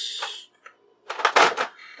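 A short burst of clicks and rattling from a plastic makeup palette being handled, about a second and a half in, after a brief hiss at the start.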